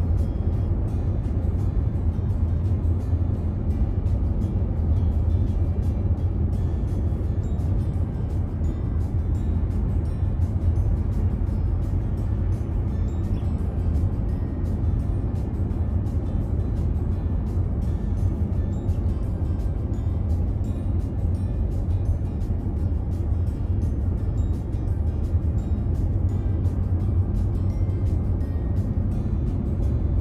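Steady low rumble of a car's road and engine noise heard from inside the cabin at highway speed, with music playing over it.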